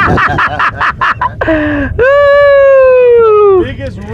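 Excited men's voices, then about two seconds in a long drawn-out shout from one man, its pitch slowly falling, lasting about a second and a half.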